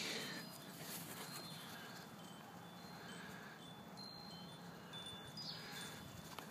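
Faint outdoor background hiss with a few thin, high ringing tones now and then.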